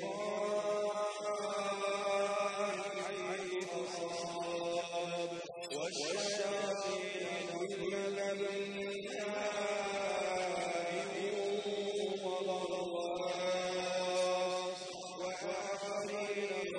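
A man recites the Quran in the melodic chanted style of tajweed, holding long, slowly bending notes. A short breath breaks the line about five and a half seconds in.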